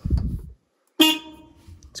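A 1971 VW Beetle's horn sounds once, about a second in: one steady tone lasting nearly a second, fading away. It is preceded by a short low rumble.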